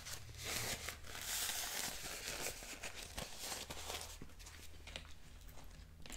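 A plastic Taco Bell hot sauce packet being crinkled and torn open by hand. The crinkling is dense and loudest from about half a second to two and a half seconds in, then eases into softer rustling and handling.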